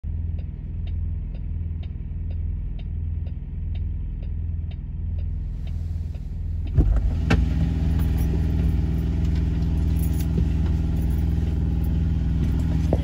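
Truck engine idling, heard from inside the cab, with a steady clicking about twice a second. About halfway through the cab opens to the outside: the clicking is lost, and a louder engine hum with wind hiss fills the rest.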